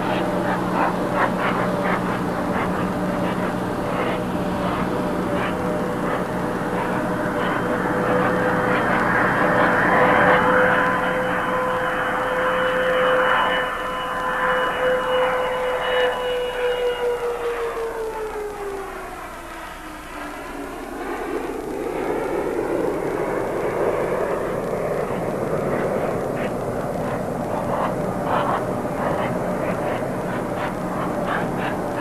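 Jet aircraft passing overhead. Its engine whine drops sharply in pitch as it goes by, about two-thirds of the way through, with a swirling, phasing sound, and then it rumbles away.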